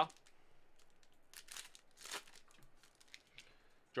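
Foil trading-card pack wrapper being torn open and crinkled by hand: faint, short rustles, clustered about one and a half to two and a half seconds in.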